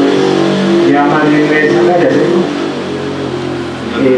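Indistinct talking with a steady low hum underneath. The talking fades out about two and a half seconds in.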